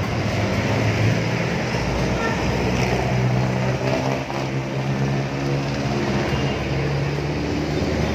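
Jeepney's diesel engine running close by with a steady low hum, over the noise of street traffic.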